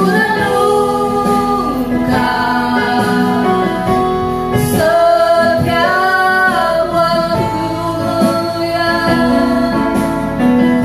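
Two women singing an Indonesian worship song into microphones, with electronic keyboard accompaniment.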